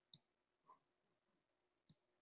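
Near silence with two faint clicks, one just after the start and one near the end, typical of a computer mouse being clicked, and a softer short sound between them.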